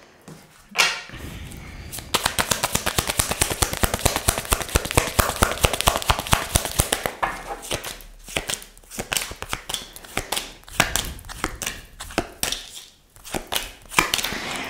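Tarot cards being shuffled by hand: a fast run of papery clicks for about five seconds, then slower snaps and taps as cards are dealt onto the table.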